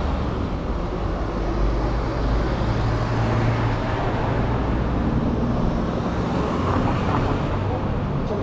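Low engine rumble of slow-moving vehicles passing along a town-centre street, swelling a few seconds in, over steady street ambience.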